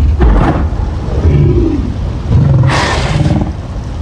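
Giant movie-monster ape growling in a deep, continuous rumble, breaking into a harsher, louder snarl about three seconds in.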